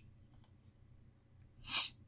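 Near silence with a faint low hum, then near the end a short, sharp in-breath by the speaker before speaking.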